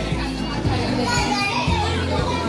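Music playing with steady bass notes under the mixed chatter and voices of children and adults.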